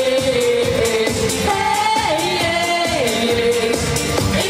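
A woman sings a pop song into a microphone through the hall's PA, holding long notes that glide between pitches, over a backing track with a steady beat.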